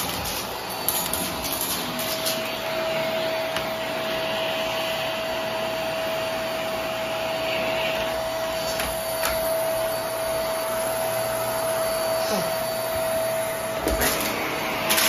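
Vacuum cleaner running steadily over carpet with a constant whine. A few sharp clicks come as pieces of debris, can pull tabs and beads, are sucked up.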